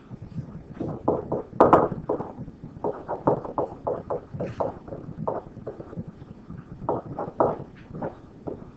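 Stylus tapping and scratching on a pen-display screen during handwriting: quick, irregular clusters of taps and scrapes, the loudest a sharp tap just under two seconds in.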